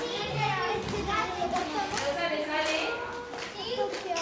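Children's voices chattering in a classroom, with a few sharp clicks as counting rods are handled on the desk board.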